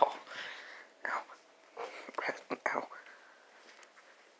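A person whispering softly in several short breathy bursts, falling quiet near the end.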